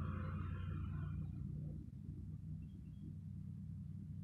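Steady low hum of room tone, with no distinct event.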